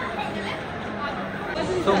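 Indistinct chatter of a crowd of people talking in a large indoor public space, with no single clear voice.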